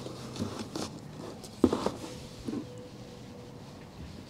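Handling noise as a boxed power inverter is lifted out of its cardboard box and turned over: cardboard rustling and scraping with a few knocks, the loudest a sharp knock about one and a half seconds in.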